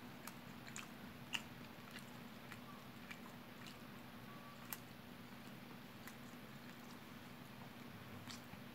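Quiet chewing and smacking mouth sounds of someone eating rice and fried fish by hand: scattered sharp clicks, the sharpest about a second and a half in and again just past the middle, over a faint steady hum.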